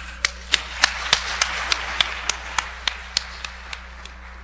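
Audience applauding. One person's claps stand out sharply at about three a second over the general clapping, and the applause dies away near the end.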